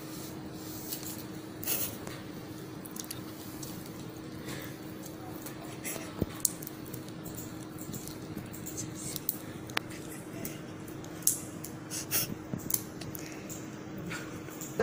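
Thin probe cover being handled and pulled over a handheld ultrasound probe: soft rustling and crinkling with scattered small clicks and taps, over a steady low hum.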